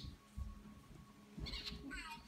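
Mostly quiet room with a faint steady hum and a couple of soft thumps, then a faint high-pitched voice starting near the end.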